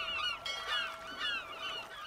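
Gulls crying, several overlapping short calls that fall in pitch, over a faint steady held tone.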